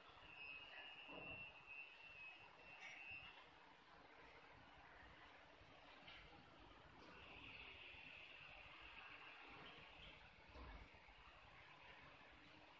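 Near silence: faint room tone, with a faint high, steady note heard twice, in the first few seconds and again from about seven to ten seconds in.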